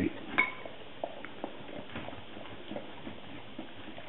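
A dog at its cake dish: light, scattered clicks and taps, with one short ringing clink, like a metal tag or dish being struck, about half a second in.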